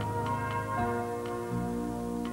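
Soft music of sustained chords, with a clock ticking about once a second; it is the interval music and tick of a TV channel's on-screen clock.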